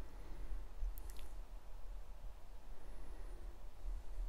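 Quiet room tone: a steady low hum with faint hiss, and one brief faint click about a second in.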